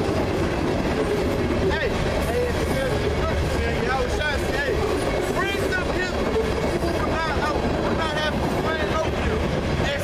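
Indistinct men's voices talking over a steady low rumble that never lets up.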